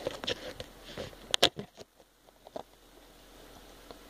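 Handling noise of a phone being set down: a few sharp knocks and rustles against a surface, the loudest about a second and a half in, then only faint room noise.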